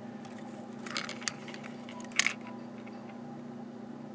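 A few faint clicks and rustles of small parts being handled inside an opened micro projector, over a steady low hum.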